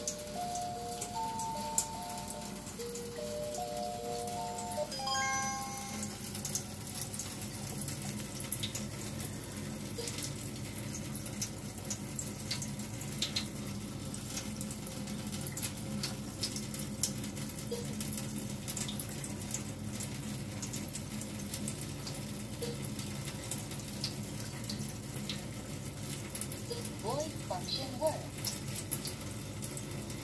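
A Tyent 7070 water ionizer plays a short stepped electronic melody for the first five seconds or so. Then water runs steadily from its flexible spout into a stainless steel sink.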